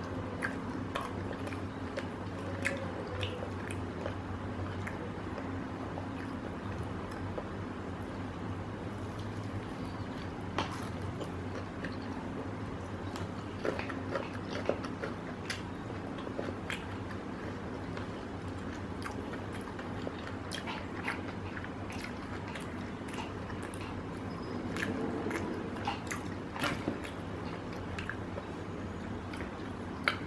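A person chewing a bite of fried chicken, with many small scattered mouth clicks and smacks, over a steady low hum.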